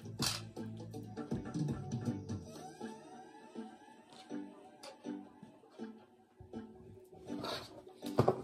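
Soft background music of single plucked string notes, guitar-like, played slowly, with a brief rustle of cards being handled near the end.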